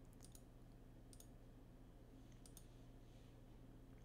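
Near silence: low room hum with a few faint computer mouse clicks, a small cluster near the start and single clicks about a second in and about two and a half seconds in.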